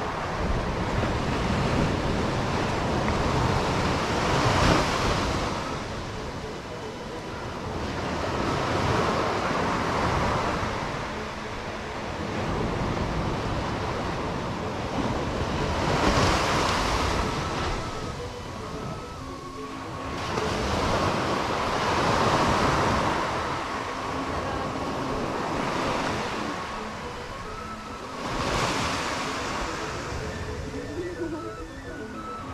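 Surf breaking on a sandy beach, the wash swelling and fading about every six seconds, with wind rumbling on the microphone.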